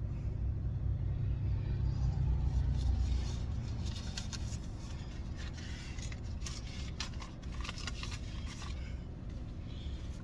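Low vehicle rumble, louder for the first three seconds and then easing off, with light paper rustling and handling noises as a receipt is picked up in the truck cab.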